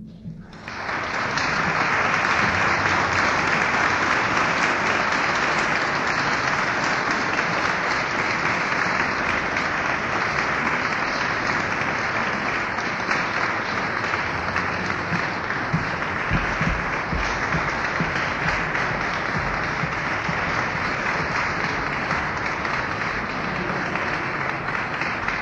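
Audience applause, starting about half a second in and going on steadily, without a break.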